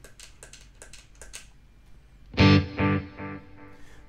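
A quick run of taps on a Wampler Faux Tape Echo's tap-tempo footswitch to set a faster delay time. After about two and a half seconds an electric guitar chord sounds through the pedal, and the delay repeats it as fading echoes roughly half a second apart.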